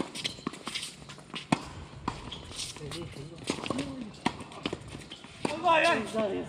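Tennis balls being struck and bouncing on a hard court: a string of sharp, irregular knocks, the strongest about a second and a half in. Players' voices call out faintly midway and loudly near the end.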